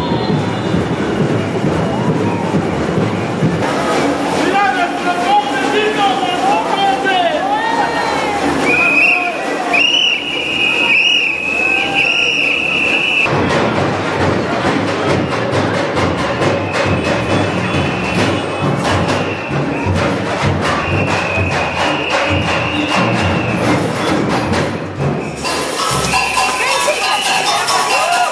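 A batucada samba drum group playing dense, fast rhythms in a street parade, with voices shouting or singing over it. A shrill whistle is held for a few seconds about nine seconds in.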